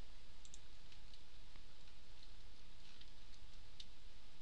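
A few faint computer mouse clicks over a steady low hum and hiss.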